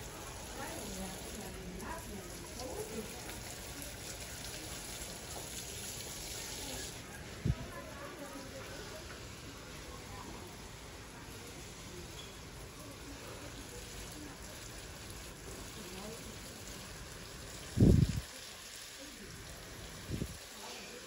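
Water spraying from a garden hose nozzle onto potted bonsai trees, their soil and pots: a steady hiss of spray, brighter for the first several seconds and then softer. A short knock about seven seconds in and a louder thump near the end.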